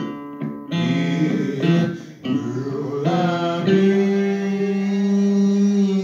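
Hill country blues performance: guitar picking with a man singing. From about three and a half seconds in, he holds one long, steady sung note over the guitar.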